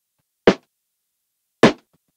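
Snare drum from a drum loop, isolated by a gate and run through saturation: two short, sharp hits about a second apart, each cut off quickly.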